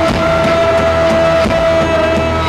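Live rock band playing: bass guitar and drum kit, with one high note held steady over them until near the end.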